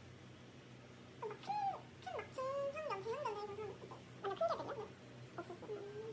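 A small dog whining: a run of high, wavering cries that slide up and down in pitch, a short break, then a few more short whines near the end.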